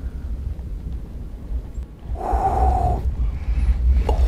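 A man's breathy, excited vocal sound, held for under a second at one steady pitch about two seconds in, over a constant low rumble.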